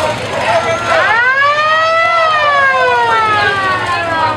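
A siren sounding one long wail: it rises quickly about a second in, then slowly falls in pitch.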